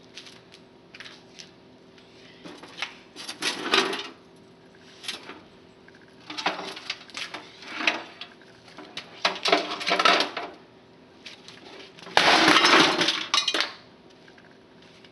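Loose broken pieces rattling inside a CRT monitor's case as it is lifted, carried and set down on concrete, in several separate bursts. The longest and loudest burst comes near the end as the monitor is tipped over onto the concrete.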